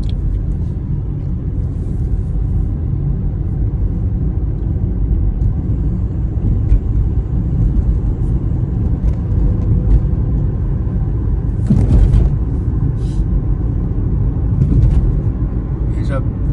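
Steady low road and engine rumble of a moving car, heard from inside the cabin, swelling louder for a moment about three-quarters of the way through, with a few faint clicks.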